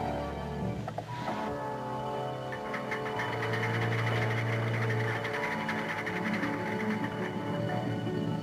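Orchestral film score playing sustained, tense chords, with a short click about a second in and a busy, fluttering figure higher up through the middle.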